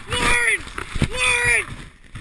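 A young person's voice crying out twice without words: two drawn-out yells, each about half a second, the pitch rising and then falling away.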